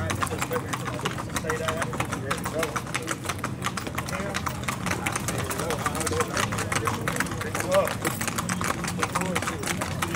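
Rapid hoofbeats of several gaited horses clip-clopping on a paved road, with a steady engine hum underneath.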